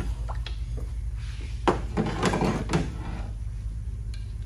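Irregular knocks and clunks of a 6L90E transmission valve body and metal parts being handled and set down on a steel workbench, over a steady low hum.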